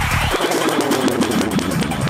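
Dark forest psytrance. The driving kick drum and bassline drop out about a third of a second in, leaving a fast stuttering run of falling synth notes over a busy high-hat and noise layer, and the kick comes back right after.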